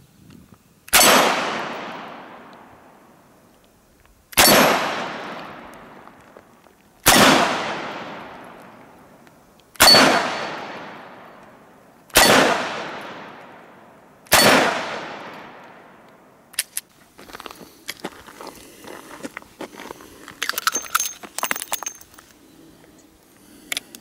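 Six shots from a Dan Wesson 715 .357 Magnum revolver, two to three seconds apart, each with a long echo dying away. After the last shot come light metallic clicks and rattles as the cylinder is opened and the revolver is handled.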